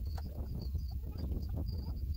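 Pepper plants' leaves and stems rustling as they are handled for picking, over a low wind rumble on the microphone, with short high chirps repeating throughout.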